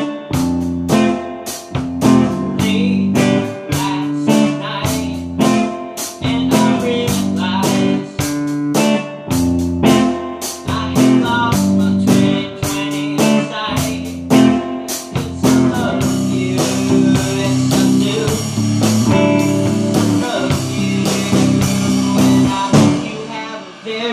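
A band plays an instrumental passage led by a guitar strummed in a steady rhythm. About two-thirds of the way in, a wavering higher melody line joins.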